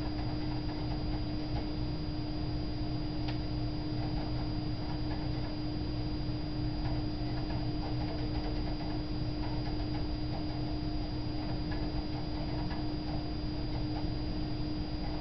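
A computer running, with a steady hum, a thin high tone and faint, irregular ticks from the CD drive as it reads the Ubuntu live CD during boot.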